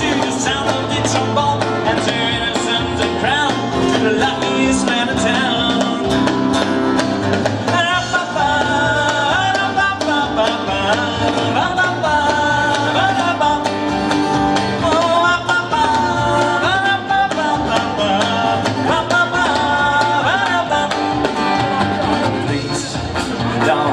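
Live band playing an instrumental passage on acoustic guitars, electric bass and drums. About a third of the way in, a wavering lead melody line comes in over the accompaniment.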